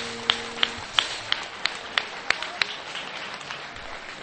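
Electric guitar's final chord ringing out through the amp and dying away in the first second. Over it, a lone pair of hands claps steadily, about three claps a second, and stops a little past halfway.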